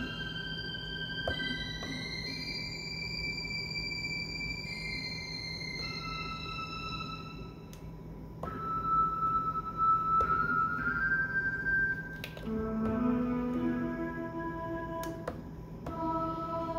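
Mellotron tape-sample plug-in played from an Akai MPC One's pads: slow, held notes changing one after another, high at first, with lower notes joining about three-quarters of the way through.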